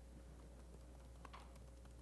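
Near silence: room tone with a steady low hum and a few faint laptop keyboard clicks as a command is typed.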